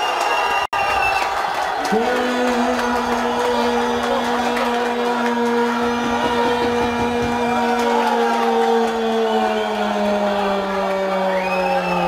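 Football crowd cheering a goal. From about two seconds in, a single voice holds one long shout, dropping in pitch as it ends.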